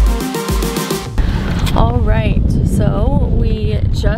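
Electronic background music that stops abruptly about a second in. It gives way to the steady low rumble of road noise inside a moving car's cabin.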